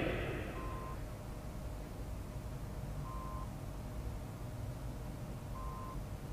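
An electronic beep, one short steady tone repeated three times about two and a half seconds apart, over a steady low hum. At the start, the tail of a louder sound fades away.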